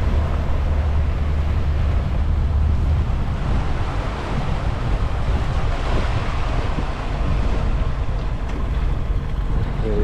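A small ferry tug's engine running with a steady low drone as it tows the car ferry float, the drone heaviest for the first three seconds or so. Wind buffets the microphone over the rush of churned water in the wake.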